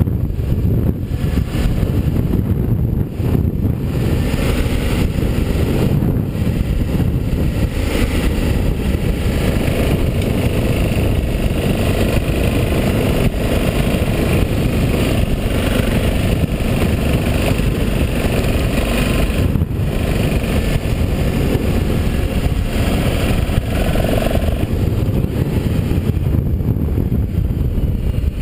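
Motorcycle engine running steadily while riding along a dirt track, with wind rumble on the microphone.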